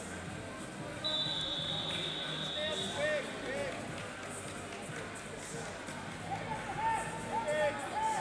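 Referee's whistle blown once, a steady shrill note of almost two seconds starting about a second in, restarting the freestyle wrestling bout after a push-out point. Short shoe squeaks on the floor and a murmur of voices in a large hall run around it.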